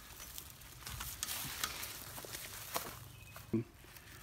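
Faint rustling and crackling of tomato foliage and straw mulch being brushed through and stepped on, with scattered small clicks.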